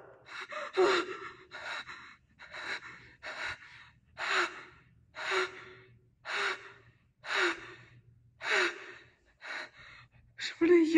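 A person's heavy, gasping breaths, about one a second and fairly regular. Many of them carry a brief voiced catch at the start.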